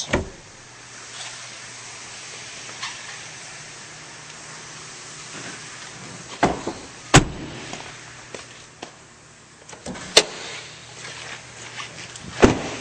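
A few sharp knocks and thumps from handling inside a pickup truck's cab, the loudest about seven and ten seconds in, over a steady low hum.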